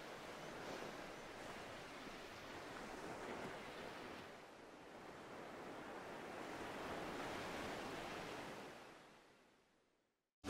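Faint, even wash of surf-like noise that swells and eases, then fades out about nine seconds in.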